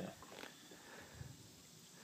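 Near silence, with a couple of faint short sounds in the first second or so.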